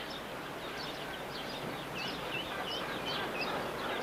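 Small birds chirping: many short, quick, falling chirps, several a second, over a steady outdoor hiss.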